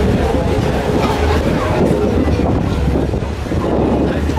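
Outdoor crowd ambience: a steady low rumble under the chatter of people nearby.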